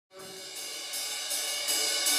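Rock drummer's cymbals struck in a steady pulse, about every third of a second, growing louder from near silence.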